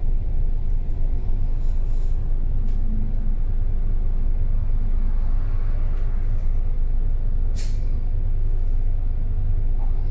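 Steady low rumble of a double-decker bus's engine and road noise, heard from inside on the upper deck. About three-quarters of the way through there is one short hiss of air from the bus's air brakes.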